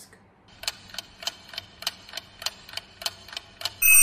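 Clock-ticking countdown sound effect, about three ticks a second, giving time to answer a quiz question; near the end a loud, steady electronic alarm tone sounds to mark that the time is up.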